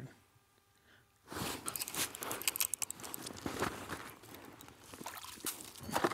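Snow crunching and snowsuit rustling as a kneeling ice angler moves to land a hooked walleye through the ice hole. A dense, irregular run of crunches and scrapes starts about a second in and eases off toward the end.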